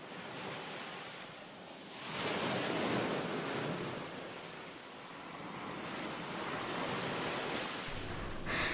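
Ocean surf washing on a beach: a steady rush of noise that swells about two seconds in, eases off, and builds again toward the end.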